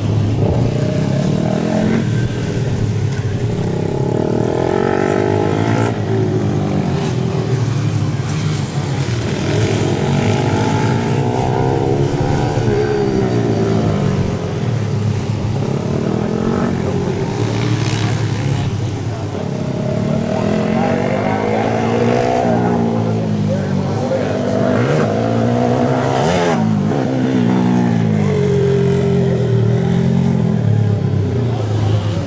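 Dirt bike engine revving up and falling back over and over as the motorcycle accelerates down the straights and shuts off into the turns of a dirt track.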